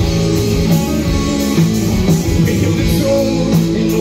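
Live rock band playing loudly: electric guitars over a drum kit.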